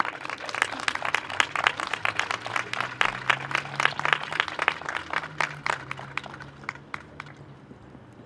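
Audience applauding, many hands clapping irregularly, thinning and dying away about seven seconds in.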